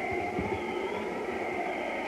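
Radio-drama blizzard wind effect: a steady rushing wind with a faint, slowly wavering tone.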